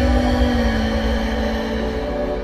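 Chillout ambient music: a long, held low synth note that sinks slowly in pitch, over a rumbling, hissy backing.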